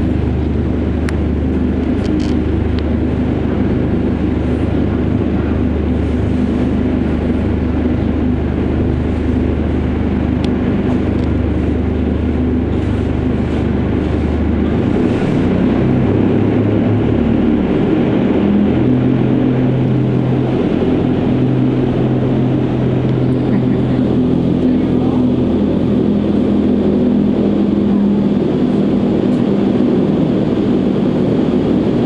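Vertical wind tunnel's fans running, a loud, steady rush of air through the flight chamber. About halfway the low hum shifts up in pitch and the sound grows slightly louder.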